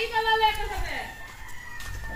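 A rooster crowing once: a single call that rises, holds, then falls away about a second in.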